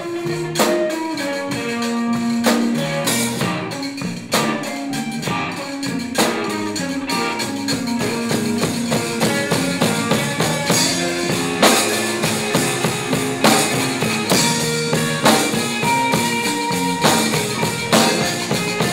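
Zydeco band playing an instrumental passage: drum kit keeping a steady beat, electric guitars carrying a moving melodic line, and a rubboard (frottoir) scraped in rhythm.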